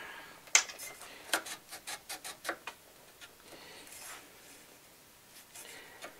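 Handguard being worked over the barrel nut of an AR-15 upper: a string of sharp clicks and taps of metal on metal, the loudest about half a second in, then fainter ticks and light rubbing as it is seated.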